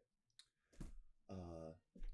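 Quiet mouth sounds from a man about to speak: a few soft clicks of the lips and tongue, then a short voiced 'mm' a little after halfway.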